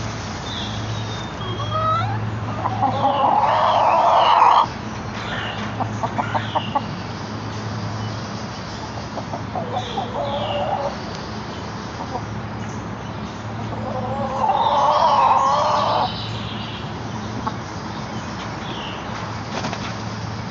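Backyard chickens calling: two long, loud calls that cut off sharply, about two seconds in and again about fourteen seconds in, with runs of quick clucks between them.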